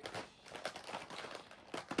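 Small clear plastic diamond-painting drill containers being shifted and straightened in a storage case by hand: faint clicks and rustling, with a couple of sharper clicks near the end.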